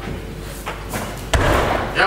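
Weightlifting clean: a loaded barbell is pulled off the platform and caught at the shoulders, with one loud thump about one and a half seconds in as the lifter's feet stamp down on the platform and the bar lands in the catch. A lighter click comes about halfway through.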